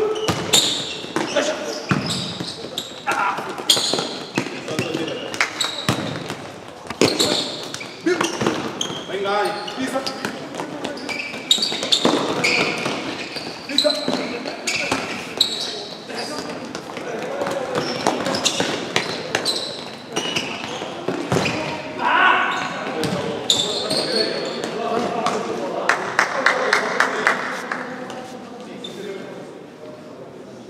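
Indoor futsal play: the ball being kicked and bouncing on the hard court floor, with players' shouts, echoing in a large sports hall.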